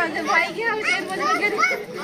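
Several women's voices talking over one another in lively group chatter.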